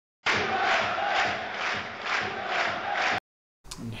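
Football stadium crowd chanting, swelling in a steady rhythm about twice a second, then cut off suddenly about three seconds in.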